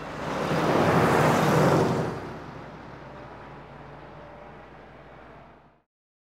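A car passing and driving away, its engine and tyre noise swelling over the first two seconds and then fading as it recedes. The sound cuts off suddenly just before the end.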